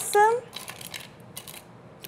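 Ice cubes clinking as they are lifted with metal tongs and dropped into a glass: a few short, sharp clicks.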